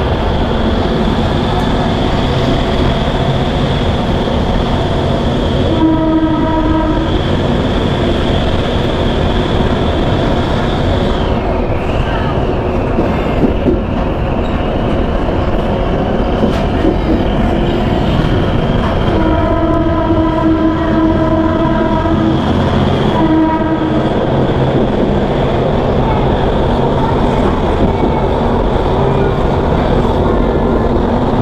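A moving commuter train heard from an open coach window, with steady running noise from wheels and rails and wind rushing past. The locomotive's horn sounds three times: a short blast about six seconds in, a long blast around twenty seconds, and another short blast just after.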